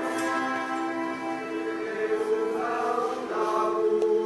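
A choir singing slow, sustained chords as background music, moving to new chords twice near the end.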